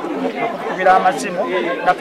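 A man talking, with the chatter of a crowd behind him.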